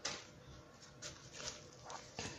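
Faint rustling and crinkling of a plastic bag as a hand rummages in a cardboard box, with a few soft crackles, the loudest right at the start.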